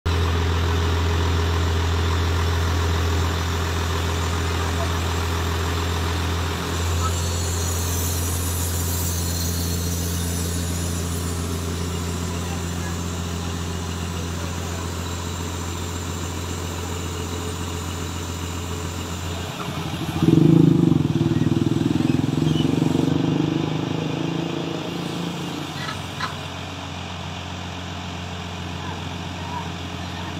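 A lorry crane's truck engine running steadily, as it powers the boom lifting the basket. It grows louder for about six seconds two-thirds of the way through, then settles back down.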